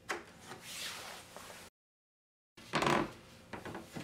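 A notched wooden key sliding in a wooden pin-tumbler lock, lifting the wooden pins and moving the wooden latch bolt: wood rubbing and clicking. A louder wooden clack comes about three seconds in, followed by a few small clicks.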